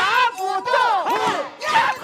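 Several Laoqiang opera performers shouting together, loud overlapping calls that swoop up and down in pitch, with a brief dip near the end before the shouting picks up again.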